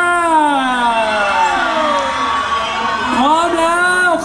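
A person's voice holding one long drawn-out call that slides steadily down in pitch over about two and a half seconds, then a second call rising near the end, with crowd cheering underneath.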